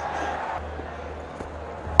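Cricket stadium crowd noise, a steady murmur over a low hum. Right at the end comes a single sharp crack of bat striking ball.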